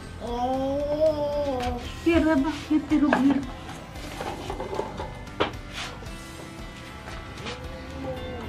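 A toddler's voice: a drawn-out sing-song vocal sound, then a louder burst of excited babbling about two seconds in, with a couple of short sharp knocks later, over background music.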